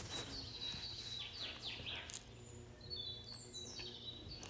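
Faint birds chirping: a run of quick downward chirps about a second in, over a low steady hum.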